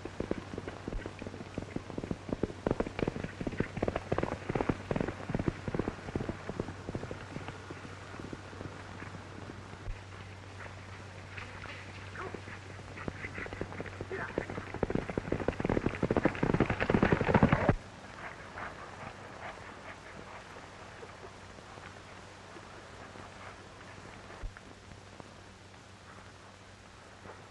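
Horses galloping: rapid hoofbeats pounding on the ground. They are dense early on, ease off, then build to their loudest before cutting off suddenly about two-thirds of the way through, over a steady low hum from the old film soundtrack.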